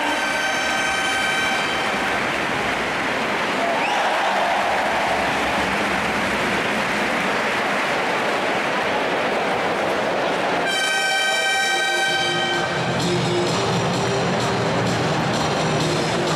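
Basketball arena horn sounding twice over steady crowd noise: a blast of about two seconds at the start, then another of about a second and a half near the eleven-second mark.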